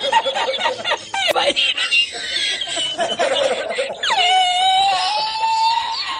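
A man laughing hysterically in high-pitched fits, ending in one long squealing held note from about four seconds in.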